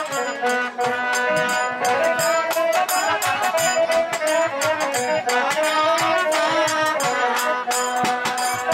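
Traditional Bengali folk-theatre band music: a trumpet carrying a sustained melody over a steady percussion beat.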